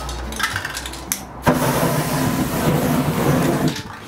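Aerosol spray paint can hissing in one continuous burst of about two seconds, cutting off sharply, after a couple of light clicks from the can being handled.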